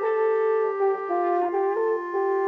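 Bawu, the Chinese free-reed transverse flute, playing a melody whose notes change every few tenths of a second, over a held lower note.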